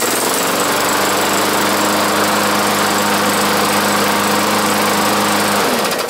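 Walk-behind rotary lawn mower engine running steadily just after starting on the first pull, after sitting all winter with fresh fuel and primer. It settles up to speed in the first half second, then is shut off near the end and winds down.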